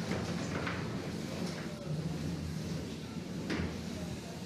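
Arena flame jets firing: a rushing noise, with a few sharp knocks from the robots and arena, over background voices.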